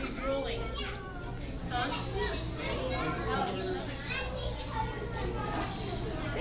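Many children talking and calling out at once, a continuous babble of overlapping voices, over a steady low hum.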